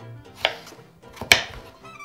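Kitchen knife chopping raw potato into cubes on a wooden cutting board: two chops about a second apart, the second louder.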